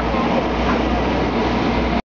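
A loud, steady low rumble and hiss of running machinery.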